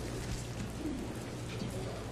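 Quiet church interior with a steady low electrical hum and faint footsteps on a marble floor.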